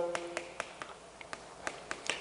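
Chalk tapping on a chalkboard as letters are written: a quick, irregular series of short, sharp clicks.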